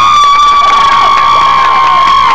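One voice close by holding a single long, high, loud cheering yell, over crowd cheering.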